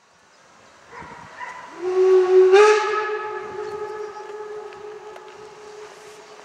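Steam whistle of the DR class 52 steam locomotive 52 1360-8, one long blast that swells in, steps slightly up in pitch about two and a half seconds in, and then fades away.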